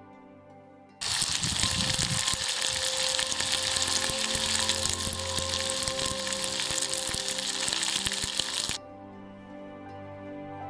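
Sausages sizzling and spitting as they fry in a small camping pan. The sizzle cuts in suddenly about a second in and stops abruptly near the end.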